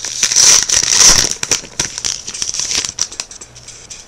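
The wrapper of a trading-card pack crinkling as it is opened by hand: a loud run of crackles for the first second and a half, then lighter crackling that fades near the end.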